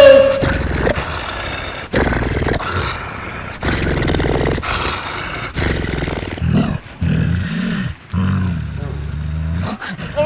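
A series of deep, rough growls, about six in a row, each lasting a second or two.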